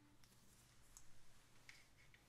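Near silence: room tone with a faint low hum and a few faint, short clicks.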